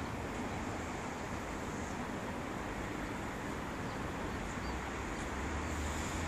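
Steady outdoor background noise with a low rumble that grows a little louder near the end, and a few faint, high bird chirps.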